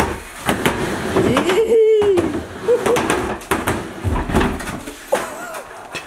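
Skateboard wheels rolling and clattering on a hollow plywood mini ramp, with repeated knocks of the board. A heavy low thud comes about four seconds in as the rider falls onto the ramp. Voices yell and laugh over it.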